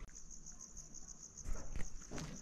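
Insects trilling outdoors: a steady, fast-pulsing high chirp. Two sharp knocks come about a second and a half in.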